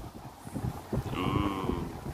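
A short, wavering, bleat-like vocal sound about a second in, lasting under a second, over low background noise.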